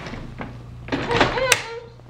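A wooden baby gate at the top of a staircase being pulled shut and latched, with a sharp click about one and a half seconds in.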